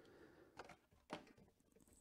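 Near silence, with faint rustling and a couple of soft taps as a cardboard trading-card box is handled.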